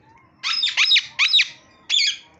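Indian ringneck parakeet screeching: a quick run of four shrill calls about half a second in, then one more short call near the end.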